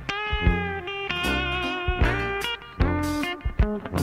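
Violin playing a bowed melody of long held notes with vibrato, over a recorded accompaniment of bass and drums.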